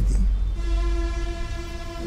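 A steady, horn-like held tone starts about half a second in, over a constant low hum.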